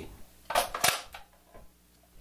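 Handling an AR-15 rifle and its magazine: two sharp clicks about a third of a second apart, about half a second in, then a few faint ticks.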